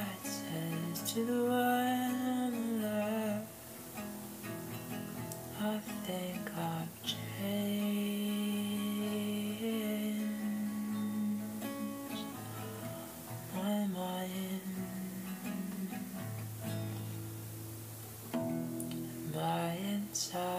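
Acoustic guitar playing, with a voice singing long, drawn-out wordless notes.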